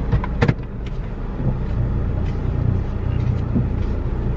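Low, steady rumble inside a car's cabin with the engine running, and a couple of sharp clicks about half a second in.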